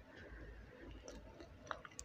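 Faint handling sounds from the loosened plastic front control panel of a washing machine, with two small clicks near the end.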